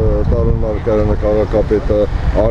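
Speech: a voice talking without pause over a low, steady rumble.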